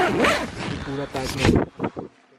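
A tent's zipper is pulled open in a few short rasping pulls, with a man talking over it.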